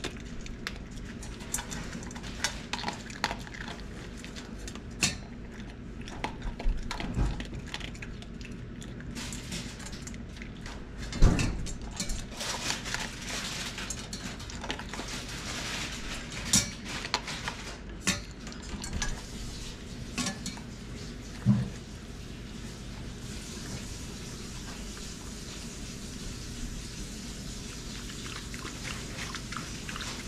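A small dog eating from a stainless-steel bowl set in a metal wire stand. The bowl clinks and knocks at irregular moments, with the loudest knock about a third of the way in and fewer clinks in the last third.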